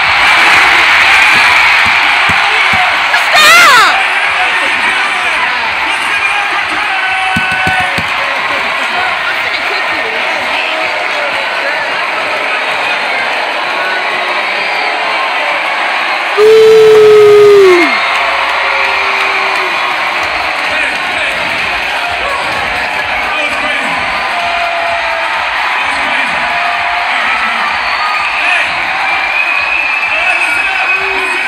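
Large arena crowd cheering and shouting, with music faint underneath. Two loud shouts close by stand out, a rising whoop a few seconds in and a falling yell about halfway through.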